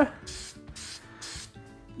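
Aerosol spray paint can hissing in a few short, light strokes, the hiss stopping about two-thirds of the way through, with background music playing underneath.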